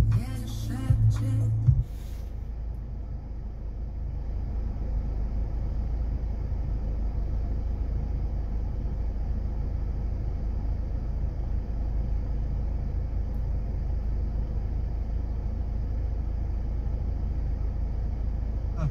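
A short snatch of broadcast sound from the car's FM radio, then a steady low rumble with faint hiss inside the UAZ Patriot's cabin while the radio tunes through stations.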